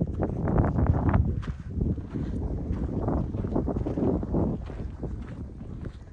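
Wind buffeting the microphone: an uneven, rumbling noise that surges and eases.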